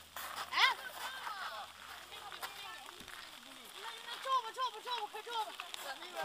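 Indistinct voices of people talking nearby, no clear words, with scattered small ticks.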